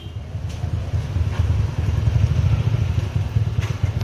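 A motor vehicle's engine running close by, a rough low rumble that swells to its loudest about two seconds in and then eases off.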